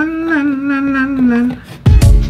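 A voice singing "la, la" on long, held notes that stop about a second and a half in. Near the end, loud background music with a beat cuts in.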